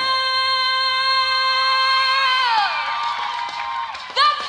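Female singer holding one long, steady high note for about two seconds, then sliding down and letting it go, at the close of a song, with an audience cheering beneath it.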